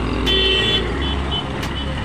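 Hero Splendor motorcycle's small single-cylinder engine idling close by, over road traffic, with a short high beep about a quarter of a second in.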